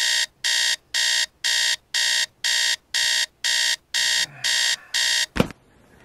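Electronic alarm beeping in even short high-pitched beeps, about two a second. It stops a little over five seconds in with a single sharp knock.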